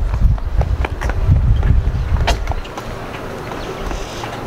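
Wind buffeting the camera microphone, a loud uneven low rumble that eases off a little past halfway, with scattered light clicks.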